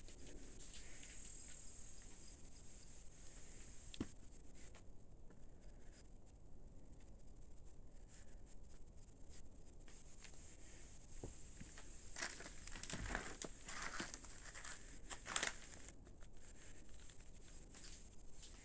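Faint rustling, crunching and scraping of dry debris (boards, shingles and leaf litter) being stepped on and handled, with a sharp click about four seconds in and a louder run of scrapes about two-thirds of the way through. A faint steady insect chirring runs underneath.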